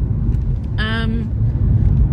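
Low, steady rumble inside a Fiat 500's cabin, the car's engine and road noise, with a short hummed vocal sound about a second in.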